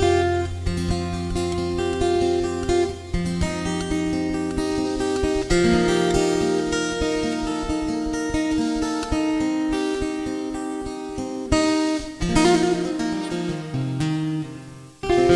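Solo acoustic guitar played fingerstyle: a plucked melody over ringing chords and bass notes, changing every second or so.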